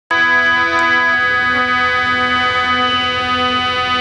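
Harmonium playing a held chord of steady, sustained reed notes, with some of the notes released a little over a second in.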